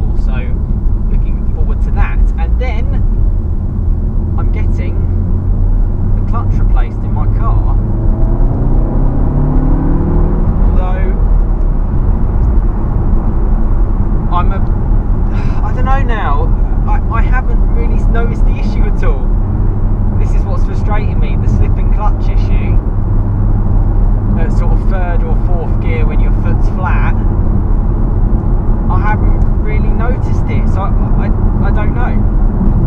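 Cabin sound of a VW Golf R's turbocharged 2.0-litre four-cylinder engine and road noise while driving, with the engine note rising for a few seconds about seven seconds in as the car accelerates.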